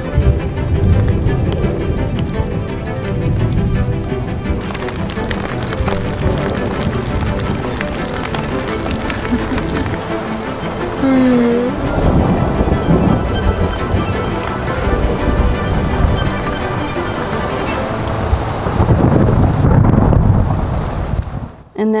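Background music over steady rain on the tent, with low thunder rumbles swelling about halfway through and again near the end; the sound cuts off suddenly just before the end.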